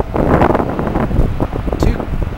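Wind buffeting the microphone, a loud, even rushing noise.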